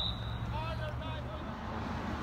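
Referee's whistle, one short high blast ending about half a second in, stopping play on the assistant referee's raised flag. Shouting voices follow.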